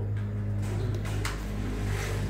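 A steady low hum from an unidentified motor or machine, with a couple of light handling clicks.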